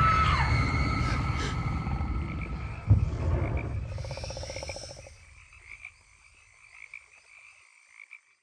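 Frogs croaking in a swamp ambience as the trailer's sound dies away. There is a single low boom about three seconds in and a fast croaking rattle around four to five seconds. After that the frog chorus goes on faintly and cuts off just after the end.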